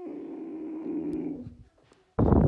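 A person's low, rasping, growl- or snore-like vocal sound, about a second and a half long, dropping a little in pitch before it stops.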